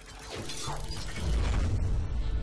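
Sound effects of an animated TV logo bumper: a swelling, rising sound with clattering debris, building into a deep low rumble that leads into the show's music.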